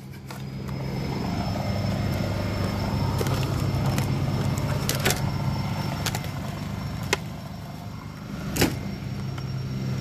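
A steady low mechanical hum runs throughout, swelling a little after the first second. Over it come a few sharp clicks and knocks: one about five seconds in, one about seven seconds in, and a louder one near the end.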